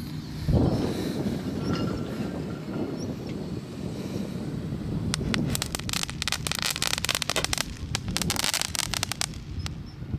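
A hand-held firework going off overhead, giving a rapid run of sharp crackling pops through the second half. Before it there is a rushing noise of wind on the microphone.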